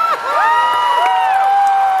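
Several audience members calling out long, overlapping high-pitched whoops in a concert hall, one voice after another joining from about half a second in, each rising at the start and falling away at the end.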